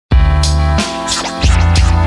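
Instrumental hip hop beat with a heavy bass line and DJ turntable scratches cut over it. It starts suddenly just after the beginning.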